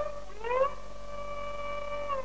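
Carnatic violin playing a solo phrase in raga Kharaharapriya: it slides up in pitch into a long held note, with no drums under it. A faint steady mains hum runs beneath, from the old concert recording.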